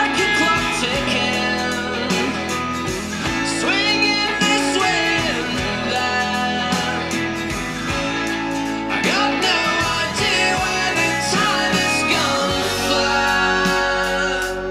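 Recorded music with guitar and singing, played from a vinyl record through hi-fi loudspeakers as a listening test.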